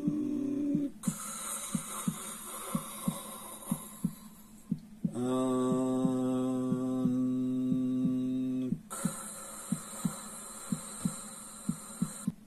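A man chanting a mantra syllable as one long, steady held tone for about four seconds in the middle, between stretches of hissing breath. Underneath runs a steady heartbeat-like pulse of soft beats, about two a second, that sets the rhythm for the breathing and chanting.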